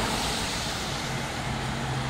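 Road traffic going past close by on a wet road: the tyre and engine noise of passing vehicles slowly dies away, and a steady low hum comes in about halfway.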